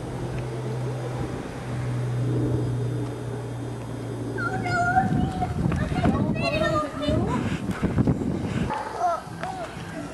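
A young child's high-pitched voice calls out in short bursts in the second half, among footsteps and handling noise. A steady low hum runs under the first half and stops about halfway through.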